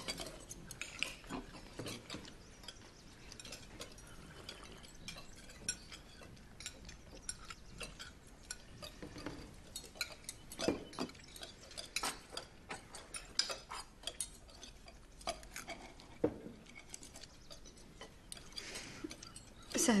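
Cutlery and china clinking: scattered small chinks and taps, with a few louder ones a little past the middle.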